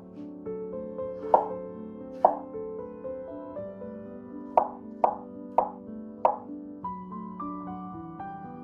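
Chef's knife cutting garlic cloves on a wooden cutting board: six sharp knocks of the blade on the board, two about a second apart, then four in quick succession. Soft background music with sustained piano-like notes plays throughout.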